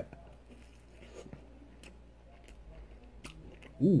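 Mouth chewing a bite of glazed apple fritter: soft, wet chewing with faint small clicks. It ends with a voiced, appreciative "ooh".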